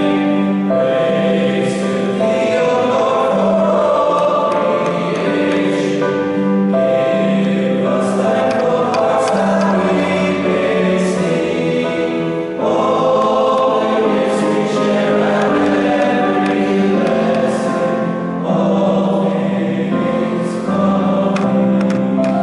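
A school choir of teenage voices singing in parts, several notes sounding together in long held phrases, in a reverberant stone church.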